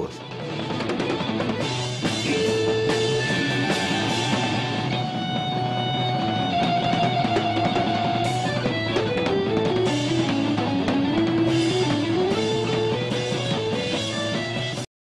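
Progressive rock band music: a drum kit under long, held lead notes that step slowly up and down over a steady low bass note, played without a break.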